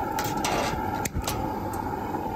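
Propane cooker burner being lit with a long grill lighter: a steady gas hiss with several sharp clicks, and a low thump a little after a second in as the burner catches.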